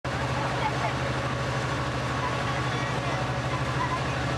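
A motor running steadily: an even low hum under a haze of noise.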